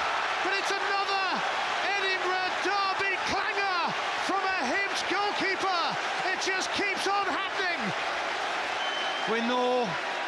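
Football stadium crowd cheering and singing to celebrate a goal: a loud mass of voices rising and falling over a steady roar, with one held chant note near the end.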